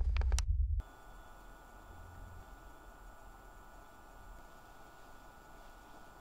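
A low rumble with faint clicks cuts off suddenly under a second in. What follows is quiet, steady hiss with a thin, constant high-pitched electrical hum: room tone.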